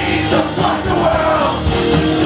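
Live acoustic rock band playing: strummed acoustic guitars and drums, with a man singing over them.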